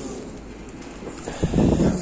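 Muffled rustling of clothing and a plastic bag handled close to the microphone. Near the end comes a loud, rough, low burst about half a second long.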